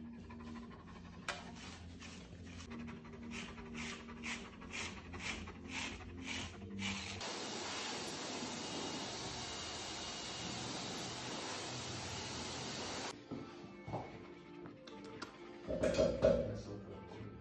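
A Pyrenean Mountain Dog panting, about two breaths a second. Then a hose-type dog blow dryer runs with a steady rush for about six seconds and cuts off abruptly.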